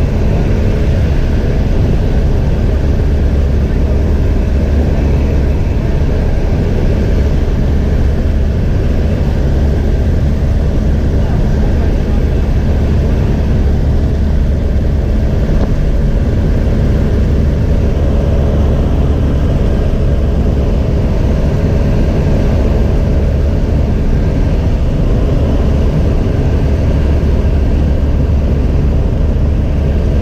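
Steady, loud drone of a high-wing light aircraft's engine and propeller in flight, heard from inside the cabin, with a deep, even hum.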